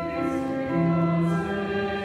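Church choir singing, on held notes that change every half second or so.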